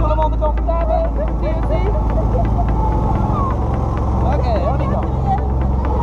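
A small ride-on vehicle's motor running with a steady low rumble and a fast, even ticking, with people's voices around it.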